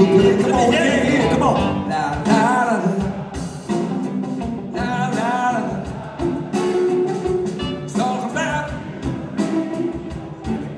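A live blues-rock band playing, with electric guitars and drums under a wailing lead line. The lead is an amplified blues harmonica cupped to a microphone, its notes bending up and down.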